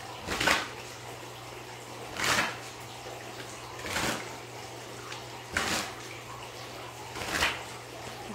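A deck of cards being shuffled by hand: five short swishes, spaced about a second and a half to two seconds apart.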